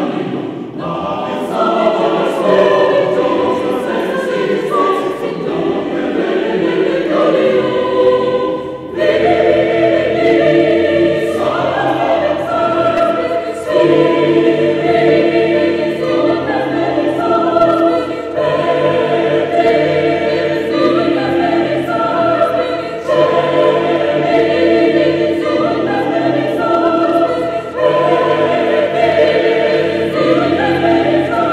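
A mixed chamber choir singing held, layered chords in a church, with a short break about nine seconds in before the voices return louder and fuller.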